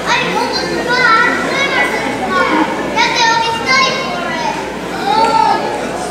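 A child's high-pitched voice speaking, loud and animated.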